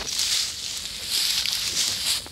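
Crunching and rustling of dry, matted grass underfoot: two crackly swells about a second apart, like footsteps through dry grass.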